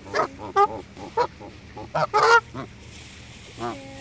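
Canada geese honking at close range: a series of short calls, the loudest cluster about two seconds in.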